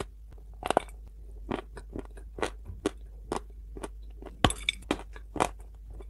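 Close-up crunching and chewing of dry Turkestan edible clay: a series of sharp crunches every half second to a second, the loudest about four and a half seconds in.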